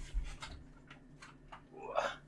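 Faint handling and movement sounds: a soft thump at the start, a few light clicks, then a short rising squeak near the end.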